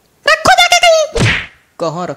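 A very high-pitched cartoon character's voice calls out, then a single thunk hits a little after a second in, followed near the end by a lower man's voice.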